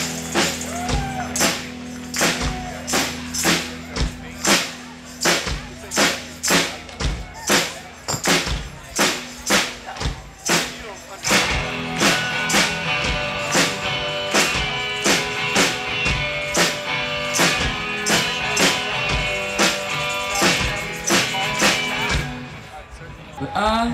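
Live band playing, with a steady beat of hand claps and tambourine at about one and a half strokes a second over held low notes. Fuller, higher held notes join about halfway through.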